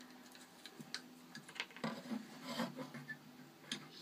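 Plastic Lego bricks being handled and pressed onto a build: faint scattered clicks and plastic rubbing on plastic, with a short scrape about two and a half seconds in.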